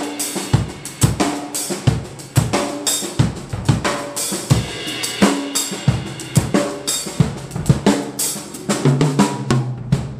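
Acoustic drum kit played with sticks: a busy run of snare, bass drum and tom hits under crash and hi-hat cymbals, played as a check of the newly set-up kit.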